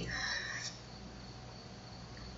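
Room tone in a pause of a home-recorded lecture: a steady hiss with a faint, continuous high-pitched whine and a low hum underneath.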